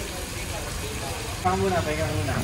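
A steady low rumble, with a person's voice coming in about one and a half seconds in.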